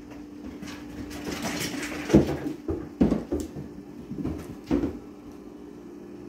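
A few dull thumps with scuffling in between, about two, three and nearly five seconds in: cats jumping down from the tops of the kitchen cabinets and landing and scrambling on the tile floor.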